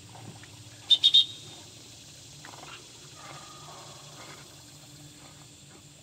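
Three short, loud, high-pitched whistle blasts in quick succession about a second in, typical of a handler's dog-training whistle. Faint water sloshing follows as the retriever swims.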